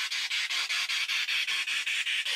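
Spirit box sweeping through radio stations: a steady hiss of static chopped into rapid, even pulses, about ten a second.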